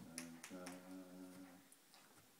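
Faint, soft instrumental playing: a run of steady pitched notes, each about half a second long, with sharp clicks over them.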